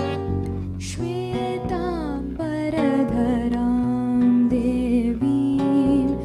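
Live instrumental music: a slide guitar played flat on the lap carries a gliding, bending melody over acoustic guitar, with a long held note in the middle.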